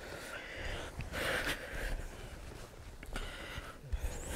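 Quiet sounds of two grapplers moving on a mat: gi fabric rustling and breathing, in a few soft noisy swells.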